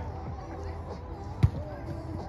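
A single sharp smack of a player hitting a volleyball, about one and a half seconds in, over faint voices.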